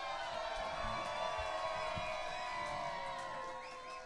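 Live band music at low level, with guitar notes held and ringing on.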